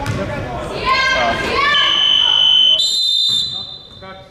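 Referee's whistle blown in one long blast of about two seconds, coming in about halfway through after shouting voices. It holds one pitch for about a second, then steps up to a higher pitch before fading near the end.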